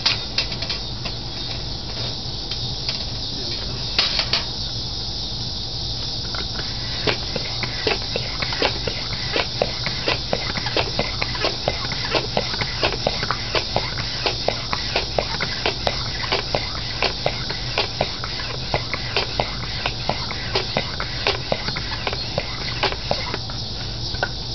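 Foot pump being worked to pressurize a Wenzel pressure lantern's fuel tank through a hose, with a short click at each stroke, about two a second, starting several seconds in. A steady high hiss runs underneath.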